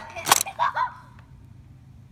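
Nerf dart blasters fired in a duel: two sharp spring-driven pops about a third of a second apart, followed by a brief vocal exclamation.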